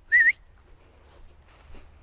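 A person's short, high whistle rising slightly in pitch, right at the start, followed by faint low wind rumble.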